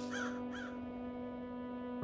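Crows cawing, a quick run of caws in the first second, over a held chord of the score.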